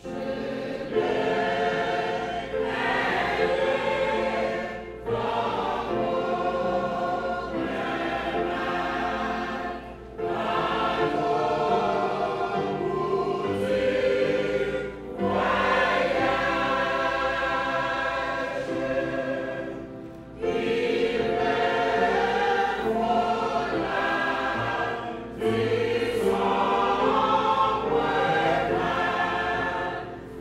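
Church choir singing together in full voice, in phrases of about five seconds separated by brief pauses.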